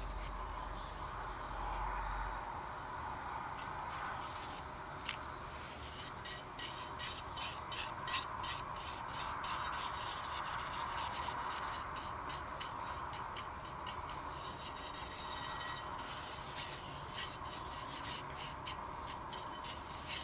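Small hand tool scraping fine dried tungsten powder out of a stainless steel pan onto paper: a faint steady rubbing, with many light ticks from about a third of the way in.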